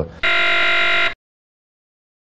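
Game-show style 'wrong answer' buzzer sound effect: one loud, steady, harsh buzz lasting about a second that cuts off abruptly, marking the speaker's claim as wrong.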